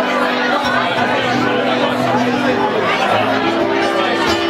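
Acoustic guitar playing held notes, a few changing near the end, under the steady chatter of a pub crowd talking.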